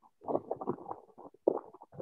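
A person's voice coming through a videoconference link, choppy and garbled so that no words come through: the call's signal is breaking up.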